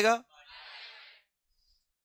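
A man's voice finishing a spoken question in the first quarter second. It is followed by a faint, brief noise of under a second with no clear pitch, then dead silence.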